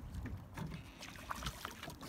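Faint ambience aboard a small fishing boat: a low rumble with scattered light taps and knocks.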